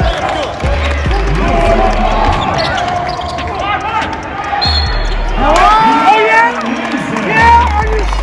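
Live college basketball play on a hardwood court: the ball bouncing and indistinct shouts from the players, over music with a deep bass line that pulses about once a second.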